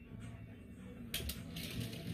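A few short, light clicks a little over a second in, as a small die-cast toy car with a metal body and plastic base is handled and lowered to a desk.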